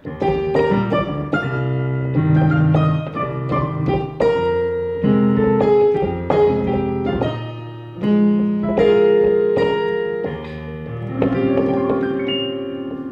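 Keyboard played with a piano sound: an instrumental passage of struck melody notes over held bass chords, each note fading after it is struck.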